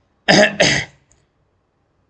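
A man coughs twice in quick succession, about a quarter second in.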